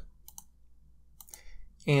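Computer mouse clicking: a quick double click about a quarter second in and another click about a second later.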